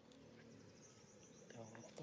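Near silence with a faint, high-pitched insect drone rising about halfway in.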